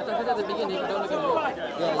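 Background chatter: several people in a crowd talking over one another, fainter than the nearby speaker's voice.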